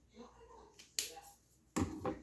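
Two sharp plastic clicks, about a second in and near the end, the second louder with a duller knock: a dual brush marker being capped and put down on the wooden table.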